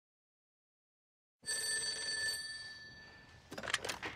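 A telephone bell rings once, starting suddenly about a second and a half in, with a bright metallic ring that fades away. Near the end come a few sharp clicks as the handset is lifted from its cradle.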